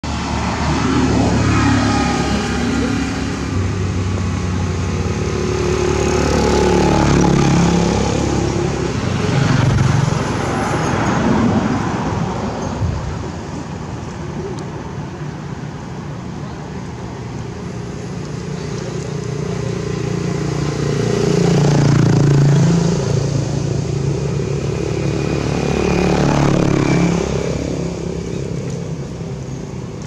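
Motor traffic passing: a steady rumble that swells and fades several times as vehicles go by.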